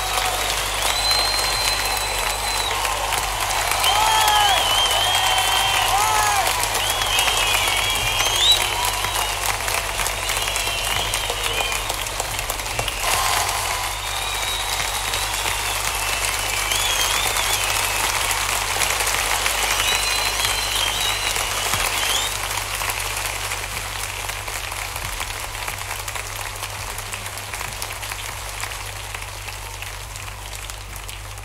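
A large concert audience applauding and cheering, with calls rising above the clapping; the applause dies away toward the end.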